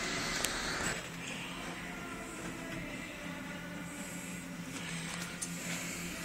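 A faint steady low hum, with a few light clicks.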